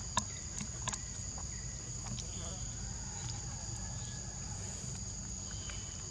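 Forest insects droning steadily at a high, constant pitch, with a couple of sharp clicks in the first second.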